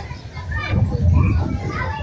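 Background chatter of many voices at an open-air gathering, with a low rumble underneath.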